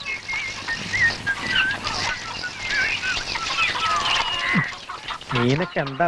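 Birds chirping and calling, many short high calls overlapping. In the last second or so a man's voice comes in, rising and falling.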